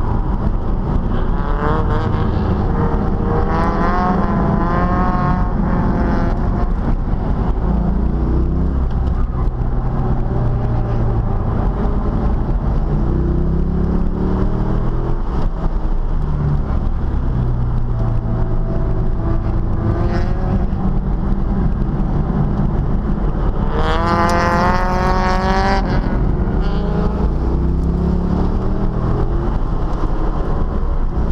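A C5 Corvette's V8 engine heard from inside the cabin while it is driven hard on a race track. The revs climb several times under acceleration and drop back in between, over a steady rumble of road and wind noise. The strongest pull comes about three-quarters of the way through.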